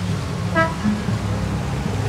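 A steady low engine drone with one short horn toot about half a second in.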